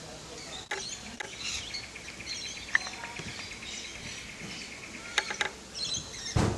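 Outdoor ambience with scattered high chirps and a fast, even ticking call from about a second and a half in until about five seconds in, with a few sharp clicks.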